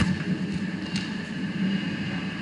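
Steady room hum in a pause between words, with a faint click about a second in.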